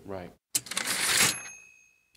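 Typewriter sound effect: a short mechanical clatter of the carriage, then a single bell ding that rings on and fades away.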